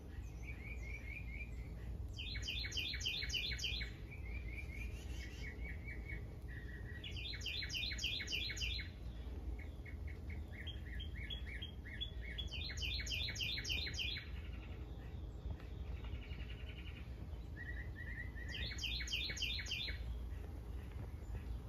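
Songbirds singing: one bird repeats a short, fast phrase of high chirps about every five seconds, with softer runs of chirps from other birds in between, over a low steady rumble.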